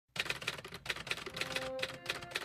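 Typewriter sound effect: a quick, uneven run of key clicks, about eight a second, keeping time with on-screen text being typed out.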